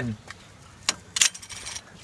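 A sharp click a little under a second in, then a short burst of metallic clinking, like a jingle of small metal parts.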